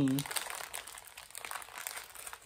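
Plastic packaging crinkling in short, light crackles as hands rummage through a tackle box and pull out a small bagged item.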